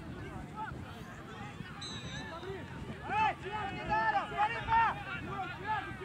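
Overlapping, unintelligible voices of players and sideline spectators calling out on an outdoor soccer pitch, with a few louder shouts in the second half.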